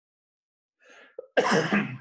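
A man coughs once, loudly, about one and a half seconds in, after a moment of silence.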